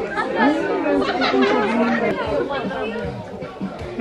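A crowd of people chattering and calling out at once, their voices overlapping without any single clear speaker.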